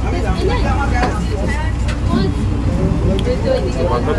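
Boat engine running with a steady low rumble, under people talking.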